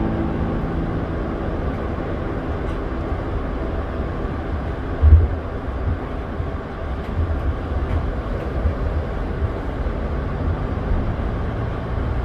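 Steady low rumble of an aircraft rolling under tow, heard from inside the aircraft, with one thump about five seconds in.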